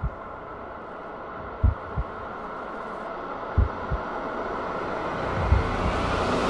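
Heartbeat-like double thumps, deep and repeating about every two seconds, over a steady drone that slowly grows louder: a heartbeat effect in the trailer's sound design.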